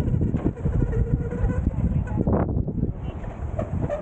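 Wind rumbling on the microphone, a steady low noise, with people's voices in the background.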